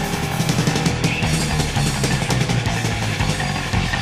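Heavy metal music: a thrash metal band playing distorted electric guitars over bass and a drum kit with crashing cymbals.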